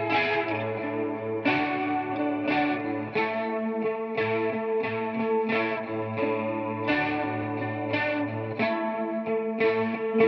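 Electric guitar playing an instrumental passage through a chorus effect: a repeating figure of picked notes, each ringing out, several a second, with no drums.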